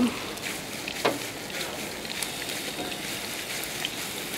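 Crepe batter sizzling in a hot oiled frying pan as more is poured in: a steady hiss, with a faint knock about a second in.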